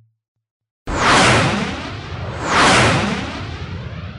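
Silence between tracks, then a noisy whooshing sound effect that starts suddenly about a second in, swells twice about a second and a half apart and slowly fades: the intro effect at the start of a black metal track.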